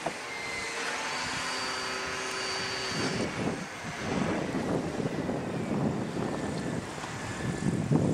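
Electric radio-controlled helicopter flying overhead: a steady electric-motor whine with rotor noise, turning louder and rougher about three seconds in.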